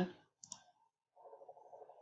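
A computer mouse clicking, two quick clicks about half a second in, then from about a second in a faint run of rapid small ticks.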